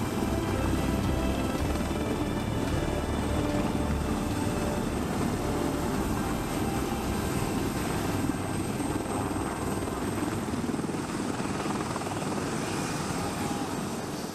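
AH-1Z Viper attack helicopter hovering low and settling onto its skids: steady four-bladed rotor and turbine noise, the low rotor throb easing somewhat in the second half.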